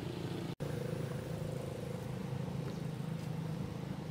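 A steady low motor hum with a faint, slightly wavering whine above it. The sound cuts out completely for a split second about half a second in.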